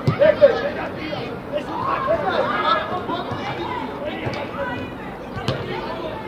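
Several voices calling and shouting at once during a youth football match, some high-pitched like children's, with no clear words. A short sharp knock sounds about five and a half seconds in.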